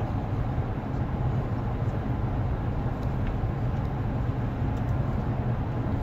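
Inside the cab of a GMC Sierra 1500 with the 6.2-litre V8 cruising in seventh gear under light throttle while towing a heavy travel trailer: a steady low engine drone mixed with road and tyre noise.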